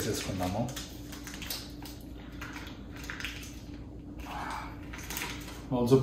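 Faint crinkling and rustling of the paper wrapper being peeled off a stick of butter by hand, over a low steady hum.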